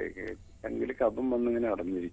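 Speech only: a person talking in a short phrase.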